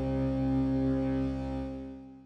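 A sustained chord played on the Battalion cinematic/hybrid brass sample library in Kontakt, held steadily and then fading away in the last half second.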